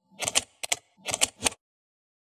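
Logo-animation sound effect: a run of sharp clicks like typewriter keystrokes, in three quick clusters, stopping about a second and a half in.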